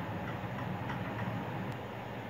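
Steady low background hum with an even noise bed, plus one faint tick near the end.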